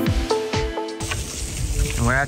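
Background music with held notes that cuts off abruptly about halfway through, giving way to a steady hiss of water spraying from a hose onto a horse being bathed.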